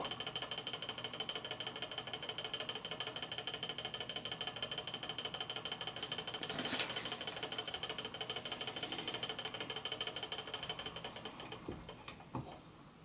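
Magnetic stirrer running with a steady electrical hum while mixing a sodium hydroxide solution; it fades out near the end as it is switched off. A brief soft noise about seven seconds in.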